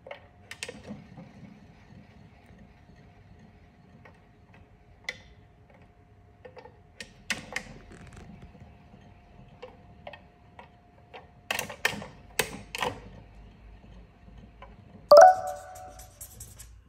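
Plastic spinning-barrel treat-dispenser toy clicking and knocking irregularly as a bichon frisé noses and paws at it, with one loud ringing hit about a second before the end.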